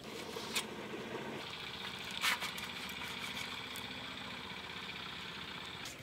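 A steady mechanical engine hum that changes tone about a second and a half in, with two light clicks of a knife against a steel plate as a pitha roll is sliced.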